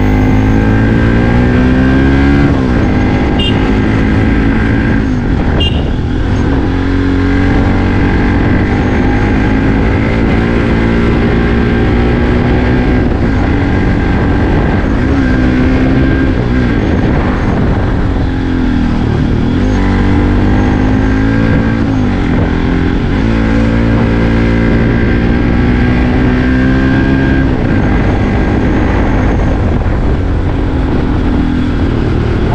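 Bajaj Pulsar NS200's single-cylinder engine pulling uphill under load, its pitch climbing under throttle and dropping back, again and again through the ride.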